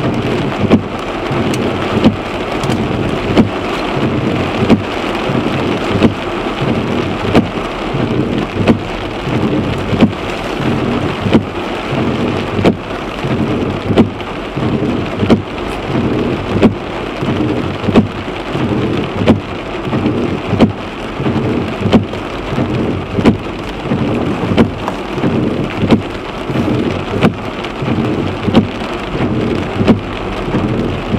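Heavy rain mixed with small hail drumming on a car's roof and windscreen, heard from inside the car: a dense, steady patter broken by frequent sharp, irregular hits of stones.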